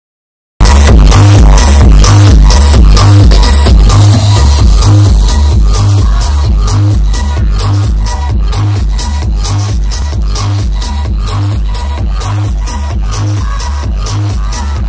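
Techno DJ set played very loud over a concert sound system and heard from within the crowd, with a heavy kick drum on a steady, even beat. It cuts in abruptly about half a second in.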